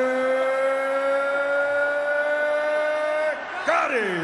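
A boxing ring announcer drawing out the winner's name in one long held call that rises slowly in pitch and ends a little past three seconds in with a falling slide.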